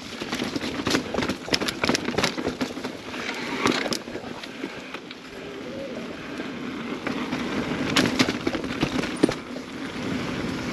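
Mountain bike rolling fast over a rocky, rooty dirt trail: tyre noise with frequent sharp knocks and rattles from the bike striking rocks and roots, busiest in the first few seconds and again near the end.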